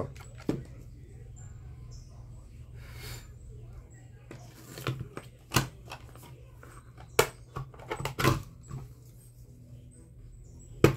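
Scattered sharp plastic clicks and knocks from the white plastic housing of an Arno steam iron being handled and its top cover lifted off, over a low steady hum.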